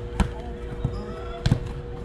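Soccer ball kicked hard in a shot, a sharp thud just after the start. A double thud follows about a second and a half in as the goalkeeper dives and lands on the artificial turf.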